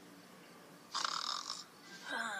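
A single short, faint snore about a second in, lasting under a second.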